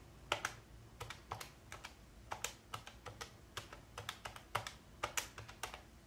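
Keys of a Pen+Gear 12-digit desktop calculator being pressed one after another, an uneven run of quiet plastic clicks about three a second, as a column of figures is added up.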